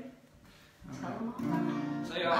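Acoustic guitar strummed about a second in, its chord ringing on.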